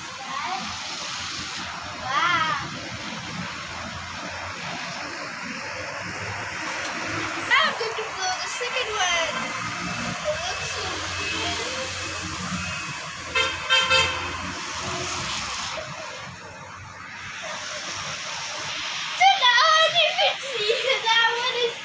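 Outdoor street ambience with a steady hiss of passing traffic, a few short voice sounds, and a brief horn toot about two-thirds of the way through.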